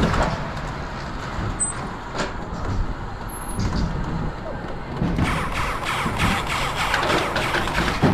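Wiegand Mystical Hex suspended coaster car running along its steel rail: a steady rolling rumble with a rattle of clicks, which grows busier for the last three seconds.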